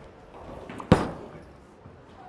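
A bowling ball landing on the lane as it is released, with one sharp, heavy thud about halfway through that fades quickly.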